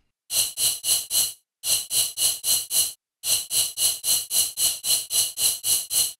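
Serum synth noise layer (the 'Air Can 4' noise oscillator) played alone as a rhythmic sequence of short, bright hiss bursts, about four a second, each with a quick swell and fast decay from its amplitude envelope. There are two brief pauses in the pattern.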